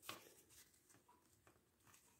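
Near silence, with a faint click at the start and a few tiny ticks after: a small plastic hand being worked onto an action figure's wrist peg.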